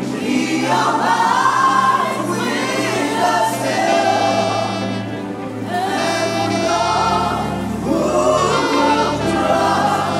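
Gospel lead and backing vocalists singing a hymn together with a live band, sustained bass notes moving beneath the voices.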